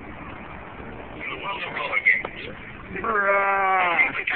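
A person's long, drawn-out laugh about three seconds in, held on one pitch for about a second and dropping at the end, over a steady low rumble inside a vehicle cabin, with scattered voices before it.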